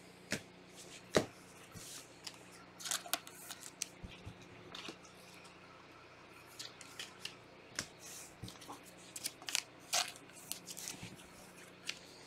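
Trading cards in hard plastic holders handled and set down by gloved hands: scattered light clicks, taps and rustles at irregular intervals, over a faint steady low hum.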